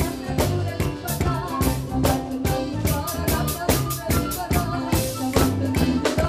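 Live folk band playing a fast tarantella: violin, guitar and a woman singing over a quick, even percussion beat and low held bass notes.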